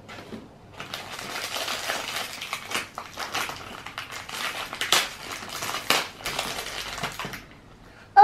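A crinkly wrapper being crumpled and pulled open by hand, a continuous crackling with a few sharper crackles about five and six seconds in.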